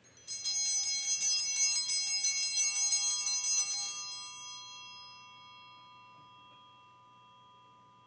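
Altar bells (Sanctus bells) shaken in quick repeated strokes for about four seconds, several bright pitches ringing together, then left to ring out and fade away. They mark the elevation of the consecrated host at Mass.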